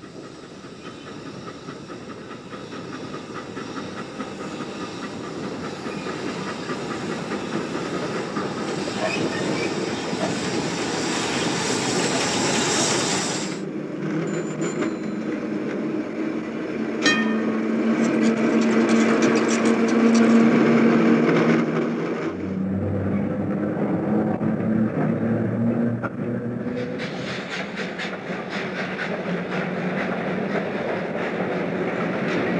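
Rail vehicles running in a series of changing sound segments. A hiss and rumble builds up over the first dozen seconds and cuts off sharply. A rumbling run with a steady hum follows, with a single sharp knock about seventeen seconds in. The sound changes again twice near the end.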